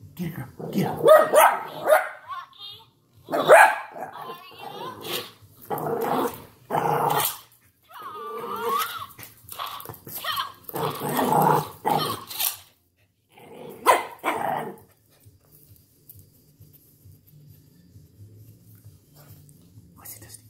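A dog barking and growling in repeated loud bursts at a kicking toy figure for about fifteen seconds. After that it falls away to a faint low hum.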